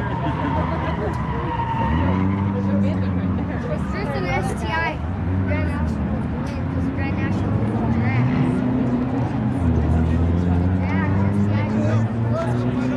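A turbocharged Buick Grand National's V6 and a Subaru's engine idling at a drag strip start line, revving up a couple of times, about two seconds in and again near ten seconds, as the cars line up to stage.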